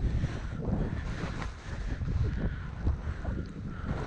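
Wind buffeting a skier's camera microphone while skiing downhill, a gusty low rumble, with the hiss of skis sliding over fresh snow.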